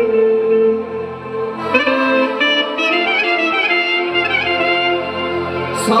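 Clarinet playing a live instrumental melody over band accompaniment: held notes at first, then quick ornamented runs from about two seconds in.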